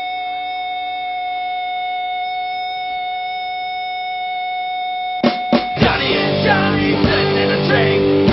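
Punk rock band starting a song live. A sustained electric guitar tone is held steady for about five seconds and cuts off with three sharp drum hits, then the full band with guitars and drum kit comes in loud and fast.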